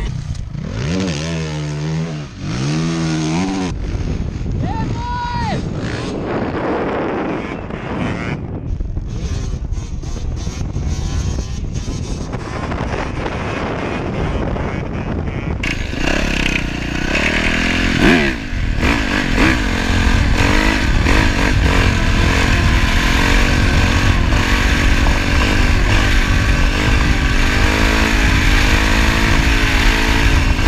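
Dirt bike engine revving on sand, its pitch swinging up and down in the first few seconds. About halfway through the sound switches to an onboard Yamaha dirt bike running at speed along the beach, its engine note wavering under a loud rushing noise.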